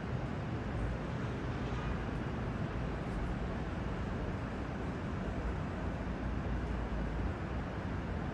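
Steady low outdoor rumble with no distinct events, the kind of background hum of a city at night.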